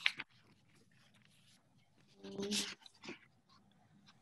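Quiet room tone with a click at the start, then a short pitched vocal sound, a whine or hum, about two seconds in, and a faint click after it.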